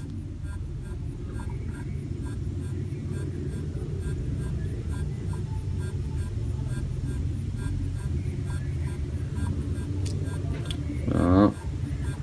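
Steady low background rumble. A lighter clicks right at the start, and a man's voice is heard briefly near the end.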